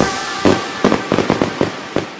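Fireworks going off: an irregular run of sharp bangs and crackles, several a second, the loudest about half a second in. Dance music fades out underneath.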